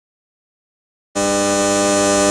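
Silence, then about a second in a steady electrical hum starts abruptly, one constant pitch with many overtones.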